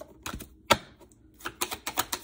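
Tarot cards handled on a tabletop: a few light taps, one sharp tap a little under a second in, then from about a second and a half a quick run of clicks, several a second.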